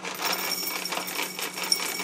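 Cereal pouring from a cardboard box into a cut-glass dessert bowl: a dense, rapid rattle of small pieces hitting the glass.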